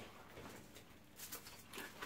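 Faint rustles and a few soft clicks of fingers picking apart grilled fish on aluminium foil, in an otherwise quiet room.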